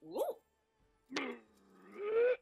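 A man imitating a frog's croak with his voice. A brief rising 'oh' comes first, then about a second in a low, drawn-out croaking call that starts abruptly and grows louder toward the end.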